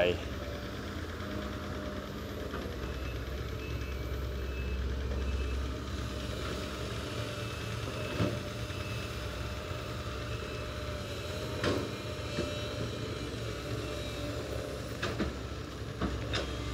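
Diesel engine of a Sumitomo hydraulic excavator running steadily as it digs in mud. The engine note grows louder for a few seconds near the start, and a few short knocks come later as the bucket and boom work.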